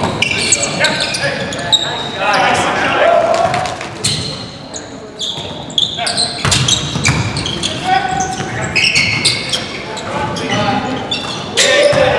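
Basketball game in a gym: a basketball bouncing on the hardwood court with short knocks throughout, mixed with players' shouts, echoing in the large hall.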